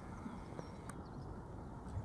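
Hoofbeats of a horse trotting on a sand arena surface, a run of dull low thuds, with one sharp click about a second in.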